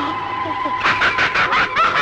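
A woman laughing in a quick run of short 'ha' bursts, starting a little under a second in and lasting about a second, over a steady high-pitched tone.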